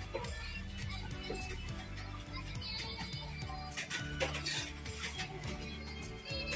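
Background music with a steady beat and bass line, laid over the video.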